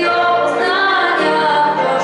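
A girl singing solo into a microphone, holding long notes.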